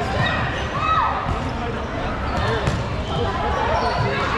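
Dodgeballs bouncing and thudding on a gym floor, mixed with players' shouts and chatter.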